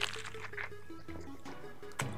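Quiet background music with a slow stepping melody over a steady low tone, with a brief crunch of a bite into a lettuce wrap at the start.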